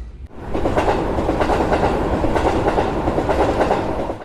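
A train running on rails: a steady rushing rumble that starts about half a second in and stops at the end, likely a train sound effect used as a transition.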